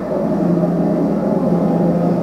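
Steady low rumble with a sustained hum, the soundtrack of a projected intro video played through room speakers as a pixel-art rocket appears on screen.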